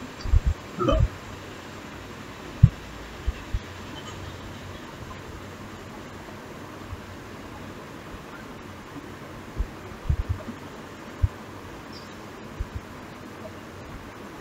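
Steady low hiss of room tone with scattered soft low thumps and bumps from handling things close to the microphone, the loudest about two and a half seconds in and a small cluster near ten seconds.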